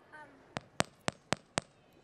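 Five sharp knocks in a quick, even run, about four a second, from a stage microphone being bumped and handled.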